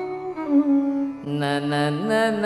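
Male Carnatic vocalist singing long, ornamented notes that bend and glide between pitches, with a violin following the melody. A new, stronger phrase begins a little over a second in.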